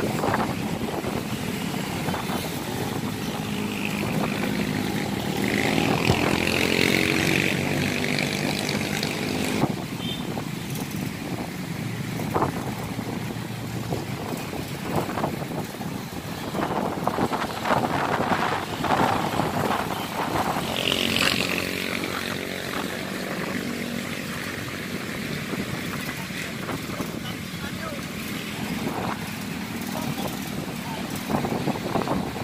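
Busy roadside ambience: motor vehicles, motorcycles among them, passing with engine pitch shifting as they go by, under a steady hum of traffic and people's voices.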